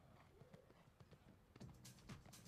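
Faint hoofbeats of an Oldenburg gelding cantering on sand footing.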